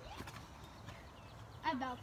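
Faint outdoor background with a low rumble for most of the time, then an excited child's voice starts talking near the end.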